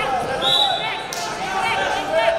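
Men's shouting voices echoing in a large sports hall, with a brief high whistle tone about half a second in and a thump just after a second.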